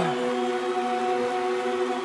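A live country band's music thinned to a single steady held chord, with the bass and drums dropped out and no vocal.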